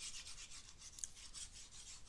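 Faint, scratchy rubbing of a stylus moved back and forth over a drawing tablet while handwritten working is erased, with a light click about a second in.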